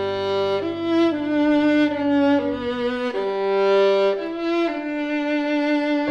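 Violin and grand piano playing classical chamber music together, the violin holding long notes that change about once a second over sustained piano chords.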